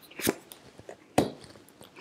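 Tarot cards being handled and laid down on a cloth-covered table: two soft, short taps.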